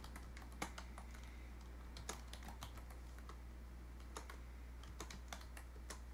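Faint, irregular keystrokes on a computer keyboard as a username and password are typed, over a steady low hum.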